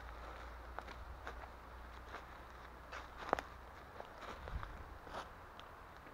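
Footsteps walking through dry leaf litter on a forest floor, with soft rustling and scattered crackles of leaves and twigs underfoot and one sharper crack about three seconds in.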